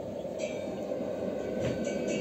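Recorded stage soundtrack: a steady low rumbling drone, joined about half a second in by a high hissing, shaker-like percussion, with the first rhythmic strokes of the music starting near the end.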